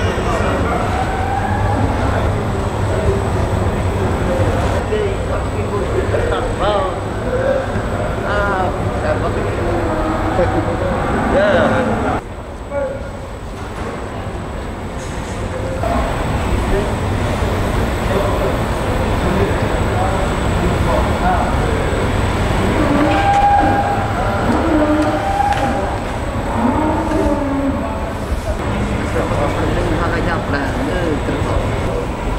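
Indistinct voices of several people talking over a steady low rumble. The sound dips for a few seconds about twelve seconds in.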